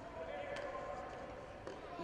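Faint gym ambience with distant voices and two light knocks, about half a second in and near the end.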